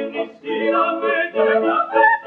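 Classically trained voices singing operetta with piano accompaniment, the notes sung in short phrases with brief breaks between them.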